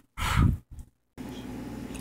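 A short breathy exhale lasting about half a second, then, after a brief silence, a faint steady hiss of background noise.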